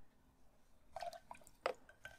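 Watercolor painting gear handled on a tabletop: a few small wet clicks about a second in, then one sharp tap with a brief ring a little later.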